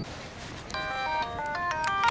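Mobile phone ringtone: a short electronic melody of steady notes in chords, stepping up and down in pitch, starting a little under a second in, over a faint background hiss.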